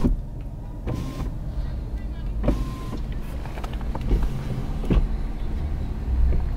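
Inside a car's cabin at low speed: a steady low engine and road rumble, with a sharp click at the start and a few lighter knocks, while the driver's power window is lowered.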